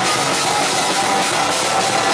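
Live rock band playing loud: electric guitars strummed over a drum kit, steady without a break.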